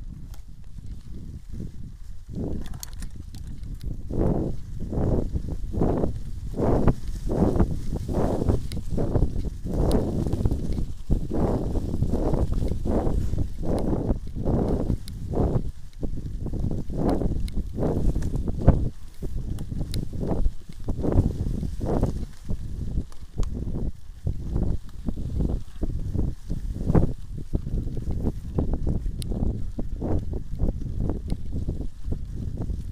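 Mountain bike descending a bumpy dirt forest trail: repeated low thuds and rattles from the tyres and frame jolting over the ground, about two a second, over a steady rumble, with occasional light clicks.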